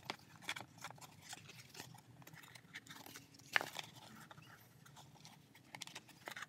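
A stiff paper phonograph horn, its panels joined with tape, crinkling and crackling as hands flex and turn it, with scattered small clicks and one sharper snap a little past halfway.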